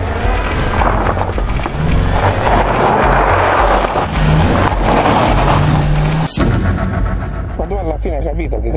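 A car driving off over gravel, with its wheels spinning and its engine running, mixed with background music. There is a brief sharp dropout about six seconds in.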